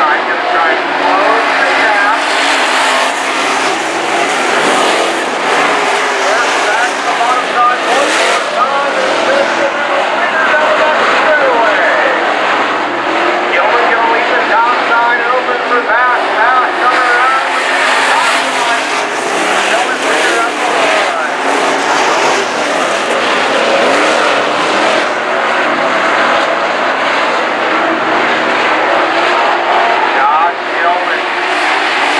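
Pack of dirt-track modified race cars running laps together, their engines rising and falling in pitch as they go through the turns and down the straights. The engine sound goes on without a break.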